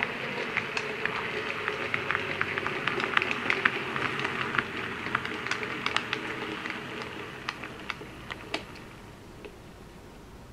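Model Class 26 diesel locomotive running on the layout's track into the station: a steady motor whir with many quick clicks and rattles from the wheels on the rails and points, fading as it slows to a stop near the end.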